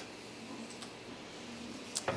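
Quiet, steady background noise of a Prusa i3 MK3S 3D printer running mid-print, with a faint low hum and hiss and one faint click a little under a second in.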